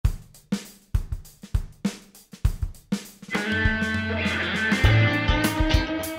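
Rock music: a drum kit plays alone, with kick, snare and hi-hat in a steady beat. About halfway through, the band comes in with electric guitar and bass over the drums.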